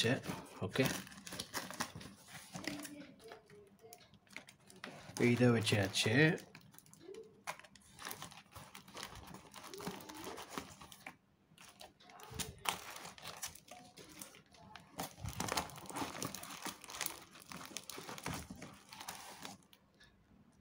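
Plastic fish-shipping bags and a foam insulation liner crinkling and rustling on and off as hands press and arrange them inside a cardboard carton.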